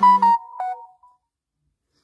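An electronic notification chime: a few short stepped notes that die away about a second in, then silence.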